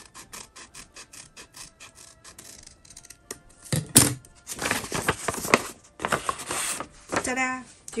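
Scissors snipping through folded paper in quick, even cuts, about five snips a second, for the first half. A loud knock follows as the scissors are set down, then a few seconds of paper rustling as the cut pattern is handled.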